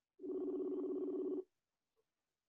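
A telephone sounding once: a single steady buzzing tone, a little over a second long, starting shortly in.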